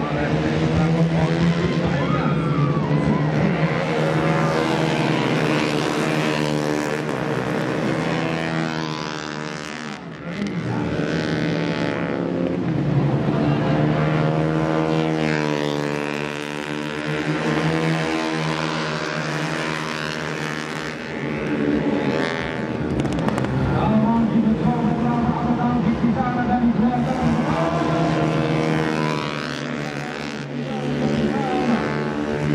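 Racing underbone motorcycle engines revving hard, their pitch rising and falling over and over as the bikes accelerate, shift and pass, with several bikes heard at once.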